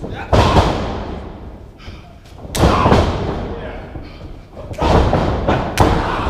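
Pro wrestlers trading strikes in a ring: four loud thuds and slaps about two seconds apart. Each one booms and rings out in the hall.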